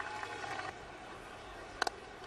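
Faint open-air ambience at a cricket ground, then near the end a single sharp crack of a cricket bat striking the ball for a shot.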